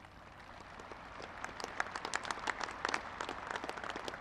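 Crowd applauding: many separate hand claps that build up over the first two seconds and then carry on steadily.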